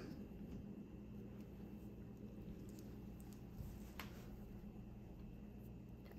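Very quiet room tone: a low steady hum with a faint click about four seconds in.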